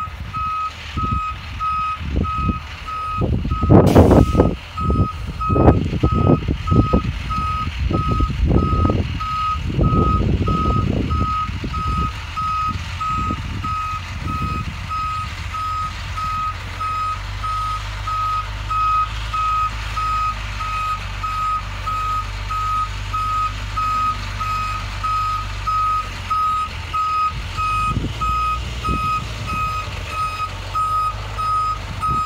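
Box truck's reversing alarm sounding steady, evenly spaced single-pitch beeps as the truck backs up, over the low running of its engine. A sharp knock about four seconds in, and uneven low rumbling in the first dozen seconds before the engine settles into a steady hum.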